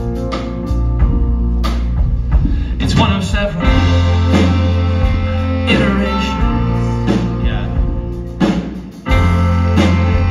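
Live band playing a song on piano, saxophone, bass and drums, with regular drum hits; the music dips briefly and the full band comes back in about nine seconds in.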